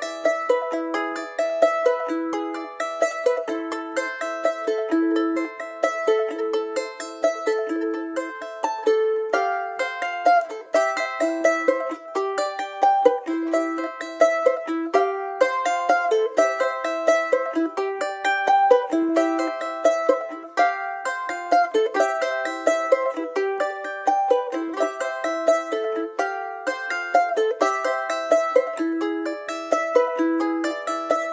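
Instrumental music: a small, high-pitched plucked string instrument playing a quick, steady stream of picked notes, with no bass underneath.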